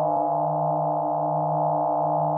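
Electronic science-fiction sound effect: a held chord of steady, buzzing tones over the constant low hum of the TARDIS console room.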